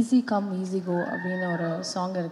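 A woman singing a few lines unaccompanied into a handheld microphone, holding long, steady notes.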